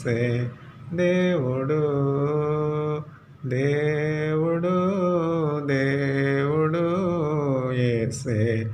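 A man singing a Telugu devotional song unaccompanied, in long held, gently wavering notes, with brief breaks about half a second and three seconds in.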